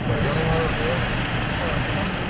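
Steady street noise of running vehicle engines, with faint voices in the background.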